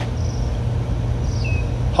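Steady low outdoor background hum, with a faint brief high chirp about one and a half seconds in.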